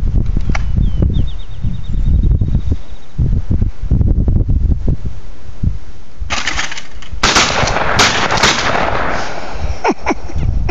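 Wind rumbling on the microphone, then shotgun fire at a thrown clay target: a loud burst starting a little past six seconds, with three or four sharp shots in quick succession between about seven and eight and a half seconds in.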